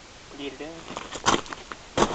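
A short murmured voice, then a few light knocks and rustles of handling close to the microphone.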